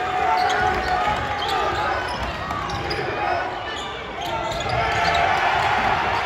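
A basketball bouncing on a hardwood gym floor during live play, under a mix of voices from players, coaches and spectators calling out.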